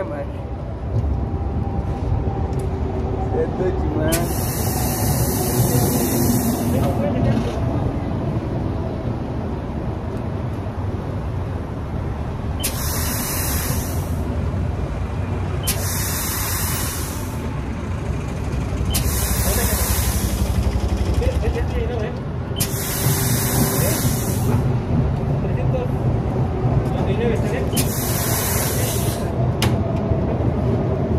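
Petrol-station air hose inflating a bicycle tyre through its valve: six separate bursts of hissing air, each one to two and a half seconds long, the first about four seconds in and the last near the end, over a steady low background rumble.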